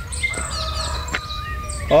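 Small birds chirping and whistling in quick, overlapping calls, over a low steady rumble.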